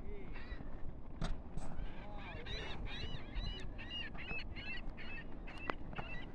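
A mixed colony of waterbirds calling as it is spooked off its island: a rapid, overlapping chorus of short, arching honking calls over a low rumble of wind and water.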